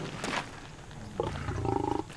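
A lion giving a short, low call in the second half.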